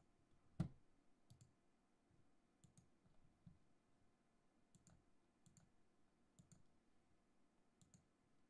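Faint clicks at a computer desk, most in close pairs, about one pair a second or so, with one louder knock about half a second in, over near-silent room tone.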